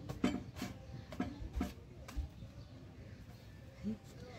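Faint, soft taps and scrapes of corn tortillas being picked up by hand off a hot metal comal and stacked, a few short ones in the first second and a half, then little but a low background.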